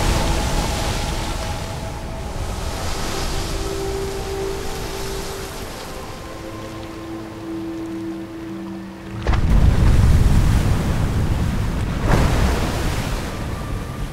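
A huge sea animal breaching and falling back into the sea. A surge of rushing water and spray at the start fades into the wash of waves, then a sudden heavy crash of water comes about nine seconds in and another surge near the end, over sustained music.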